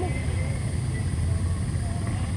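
Off-road vehicle engine idling with a steady low rumble.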